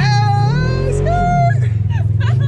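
Off-road side-by-side's engine running hard, its pitch rising and falling as it is driven, with riders shouting over it.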